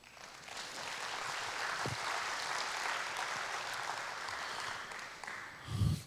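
Audience applauding in an auditorium: the clapping builds over the first second, holds steady, and dies away near the end.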